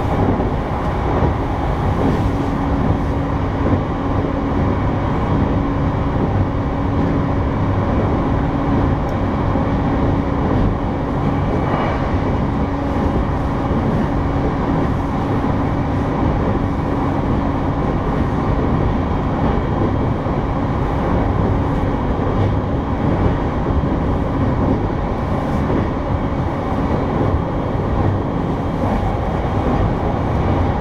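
Running noise heard inside a JR East E233-series electric commuter train travelling at speed: a steady rumble of wheels on rail with a constant hum over it.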